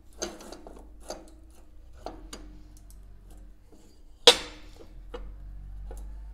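Metal clicks and knocks from the steel quick-acting vise of an Ellis 1600 band saw being slid and worked into position by hand, with one loud metallic clank that rings briefly about four seconds in.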